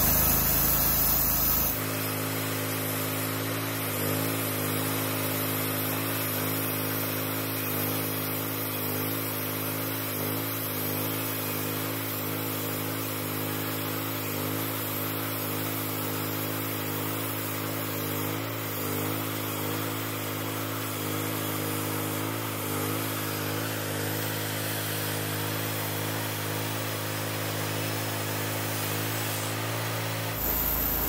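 Mister Sawmill Model 26 portable bandsaw mill, its gasoline engine running at a steady speed as the band blade saws through a hard, seasoned red oak log. The tone shifts abruptly about two seconds in, then holds even.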